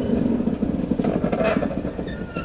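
Diesel shunting locomotive's engine running with a rapid, steady throb as the locomotive rolls slowly along the track, easing off a little near the end.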